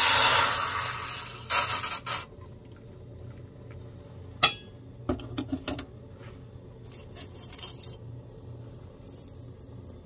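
Boiling water hitting hot fused sulfur and potash (liver of sulfur) in a small stainless steel pot: a loud hiss and sputter with a burst of steam for about two seconds. Then scattered light metallic clinks and jingles from the silver chain and the steel pot, one sharp clink about four seconds in.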